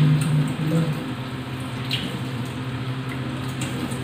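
Wet squid being handled and cleaned by hand at a sink, with small drips and splashes of water and a few light ticks, over a steady low hum.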